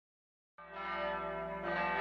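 Church bells ringing: a rich, sustained ring of many steady tones that starts suddenly about half a second in, after silence.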